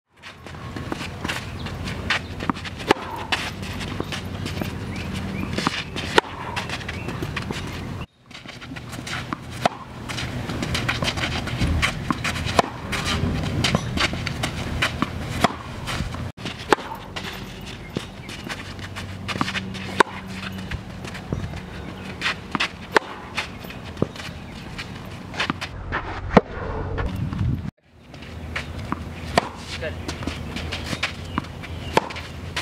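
Tennis balls struck with rackets in a practice rally: sharp hits at irregular intervals of a second or two, with footsteps on the court between them. The sound drops out briefly three times.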